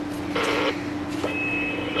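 Steady low electrical hum from the powered bench equipment, with a brief rustle early on and a short, thin, high beep lasting about half a second near the end.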